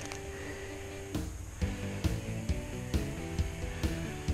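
Background music: held notes with a steady beat, a sharp hit a little under once a second starting about a second in.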